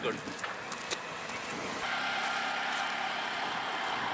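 A road vehicle's engine running steadily, setting in about two seconds in, with a brief click about a second in.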